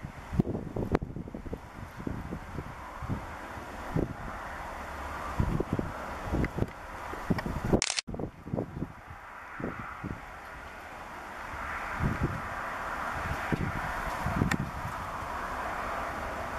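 V-22 Osprey tiltrotor flying overhead: a steady rotor and engine drone, thicker in the second half, with many irregular low thumps. The sound breaks off sharply about halfway through and picks up again.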